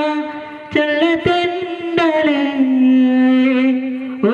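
A man singing solo into a handheld microphone, holding long sustained notes with a slight vibrato and taking a short breath about half a second in.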